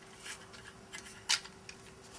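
Plastic suction-cup windscreen mount handled against the back of a handheld data terminal while it is being lined up to clip on: quiet plastic rubbing with a few small clicks, and one sharper click a little past halfway.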